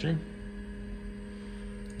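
Steady low hum of an Apple Lisa-1 computer and its ProFile hard drive running, with a few faint steady tones over it.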